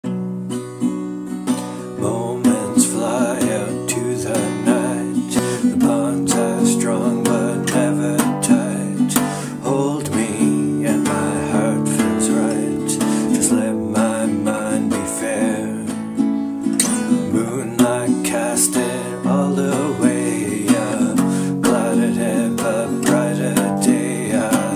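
A man singing a slow folk song to his own strummed acoustic guitar; the voice comes in about two seconds in, over steady chords.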